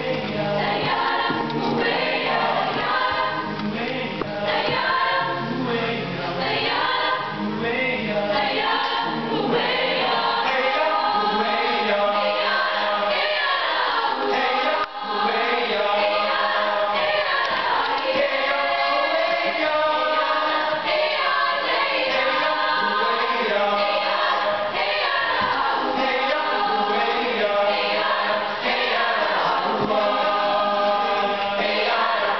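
A high school mixed (SATB) choir singing a cappella, many voices together in parts.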